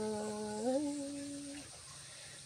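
A woman's unaccompanied voice holding the soft, fading tail of a khắp folk-song phrase. The note steps up in pitch about halfway in, then trails away shortly before the end.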